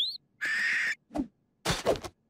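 Cartoon bird sound effects: a quick rising chirp, then a harsher bird call lasting about half a second. A short burst of sound follows near the end.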